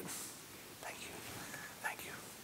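Faint murmuring and rustling of a congregation settling into its seats, with a soft knock near the end.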